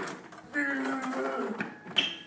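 A young man's voice in a drawn-out shout lasting about a second, with no clear words. A sharp knock comes near the end.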